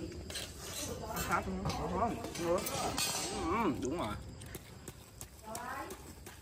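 A wooden stick knocks and prods the charred, baked clay crust of a clay-roasted chicken, making scattered sharp taps and knocks with some crumbling, while voices talk over it.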